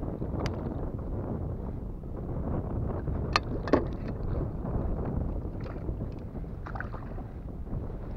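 Wind buffeting the microphone over water lapping against a plastic kayak hull, a steady rumbling wash. Three sharp clicks or knocks cut through it: one about half a second in and two close together around three and a half seconds in.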